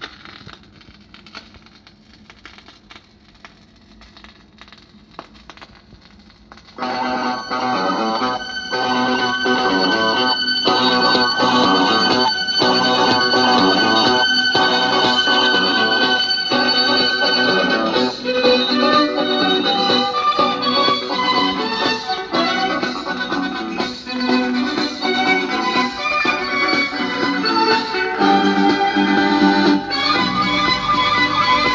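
A 7-inch vinyl single playing on an Emona record player through a Triglav 62A radio: faint ticks and crackle from the stylus in the lead-in groove, then music with guitar starts suddenly about seven seconds in and plays on.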